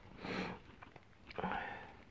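A woman sniffing twice, about a second apart, through a nose stuffed up by a cold.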